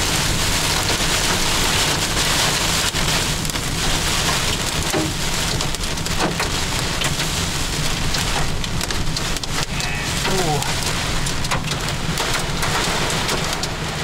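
Heavy rain pelting a car's windshield and roof, heard from inside the car as a loud, steady hiss.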